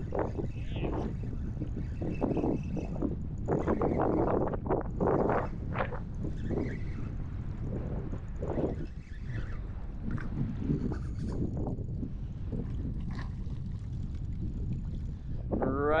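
Strong wind buffeting the microphone over choppy open water: a steady low rumble with irregular louder surges.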